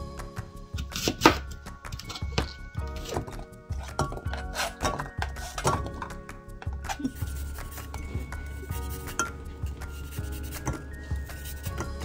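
Kitchen knife chopping apples and pears on a plastic cutting board, with irregular sharp knocks, and fruit pieces clinking into a saucepan, over background music.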